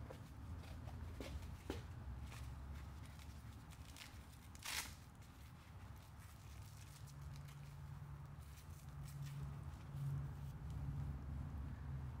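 Faint handling sounds of a hoof boot being fitted onto a horse's hoof: a few soft clicks and a short scraping rasp about five seconds in, over a low steady hum.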